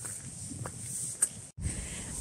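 Footsteps on a leaf-strewn asphalt driveway, a few light scuffs and clicks. After a brief dropout near the end, a low rumble.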